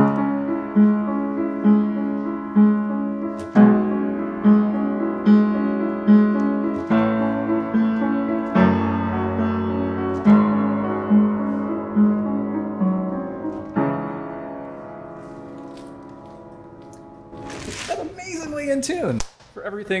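Kawai K400 upright acoustic piano being played: a passage of repeated notes and chords, ending on a final chord that rings and fades away over a few seconds. The freshly unboxed piano is still amazingly in tune after shipping from the factory.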